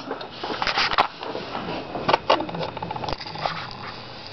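High-voltage arc from a flyback transformer driven by a ZVS driver, crackling and hissing unevenly with scattered sharp clicks. The isolation transformer on the flyback's 10-turn primary makes the arc hot but lower in voltage.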